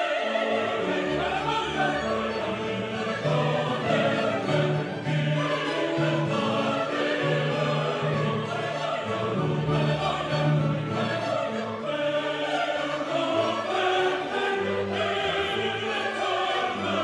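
Orchestra playing classical music with singing voices, in sustained notes over a moving bass line.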